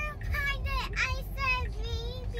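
A young girl singing in a high sing-song voice, short phrases that rise and fall, over the low rumble of the car's cabin.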